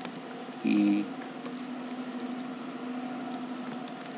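Computer keyboard being typed on: scattered, light keystroke clicks over a steady low hum.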